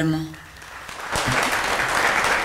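Audience applause, starting about a second in and continuing steadily.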